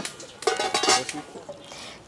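Metal pots and utensils clattering: a sharp click, then a short run of clinks with a ringing metallic tone, fading to fainter handling noise.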